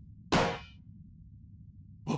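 A single sharp metallic clang, a cartoon sound effect, ringing briefly before dying away.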